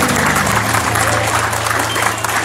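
Congregation clapping, a dense spread of many hands, over a low held instrumental note.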